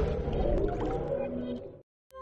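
Electronic intro music of a TV channel's logo ident, fading away and dying to silence shortly before the end.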